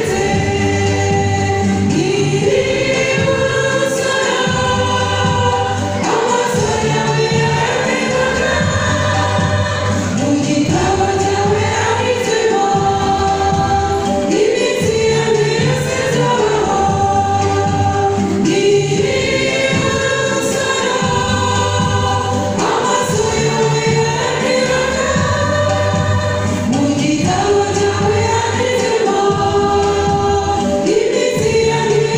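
Church choir singing a gospel song in Kinyarwanda, many voices together at a steady, loud level over a repeating low accompaniment.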